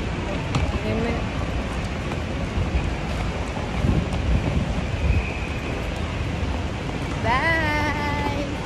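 Wind rumbling on a phone microphone while walking, over steady traffic noise, with faint voices. Near the end a woman's voice calls out, rising in pitch.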